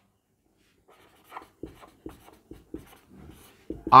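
Marker pen writing on a whiteboard: a run of short strokes starting about a second in.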